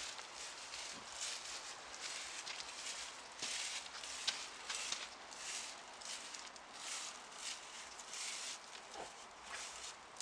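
Slow footsteps on dry leaves and dirt, a soft rustle roughly every half second.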